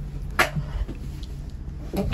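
A single sharp click about half a second in, over a faint steady low hum.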